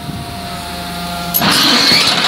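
Amphibious excavator running with a steady whine and hum, then about a second and a half in a loud scraping, clattering noise as its steel cleated pontoon tracks grind over the trailer deck.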